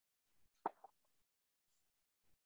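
Near silence, broken by one short, faint click a little over half a second in, followed by a smaller tick.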